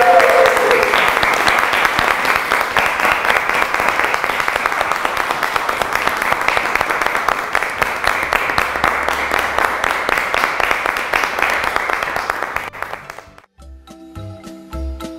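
A group of about a dozen people clapping their hands together steadily. The clapping fades out and stops shortly before the end.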